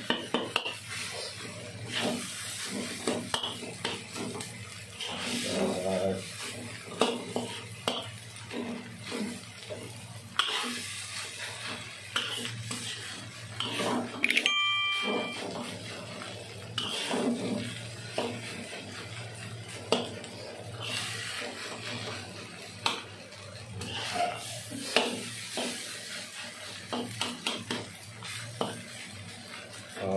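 Metal spatula scraping and knocking against a wok as fried rice is stir-fried, in irregular strokes throughout, over a steady low hum. A brief beep sounds about halfway through.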